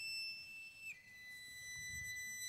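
Solo violin holding a high, quiet, pure note without vibrato, then stepping down to a lower held note about a second in.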